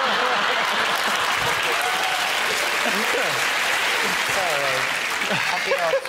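Studio audience applauding and laughing, holding steady throughout, with a few voices laughing over it.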